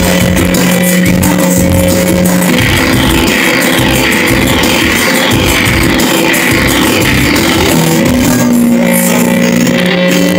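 Live band music played loud in a club, with no vocals. A held low note drops out a couple of seconds in, a run of repeated falling high-pitched sweeps plays over the beat, and the low note comes back near the end.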